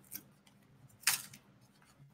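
A quiet pause with a faint click at the start and one short rustle about a second in, as the wrapped soap package is handled.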